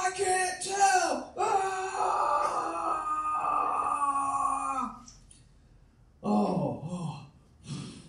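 A human voice making long, held wailing moans without words: a high sustained note that bends down about a second in, then a long lower note that sags at its end. After a pause, two shorter falling groans.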